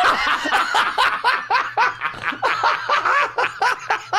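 People laughing hard at a joke's punchline: a continuous run of quick, rhythmic laugh bursts, about five a second.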